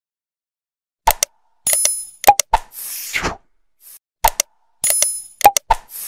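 Subscribe-button animation sound effects starting about a second in: sharp mouse clicks, a bright bell-like ding and a whoosh, the set played twice about three seconds apart.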